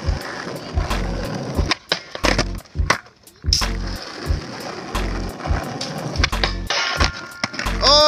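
Skateboard wheels rolling on rough asphalt, with repeated sharp clacks of the board, as a skater pushes up to a low metal flat bar and boardslides along it.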